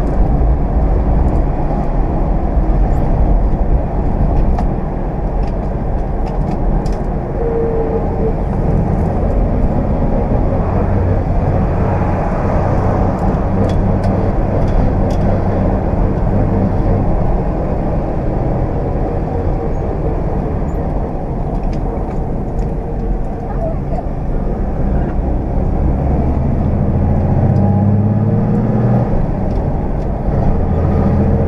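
A 1969 Ford Aero Willys driving, heard from inside the cabin: its inline-six engine runs steadily under road noise, its pitch rising near the end as the car speeds up.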